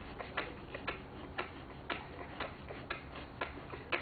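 Steady, even ticking, about two ticks a second, over a faint low hum.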